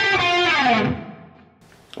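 Les Paul-style electric guitar playing a blues fill in the D minor pentatonic, a quick run of single notes. About half a second in, the notes slide down in pitch, then ring out and die away by about a second and a half in.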